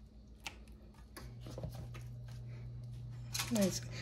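Faint clicks and taps of kitchen tongs setting marinated rib tips into a stainless steel pan. A low steady hum comes in about a second in, and a brief voice is heard near the end.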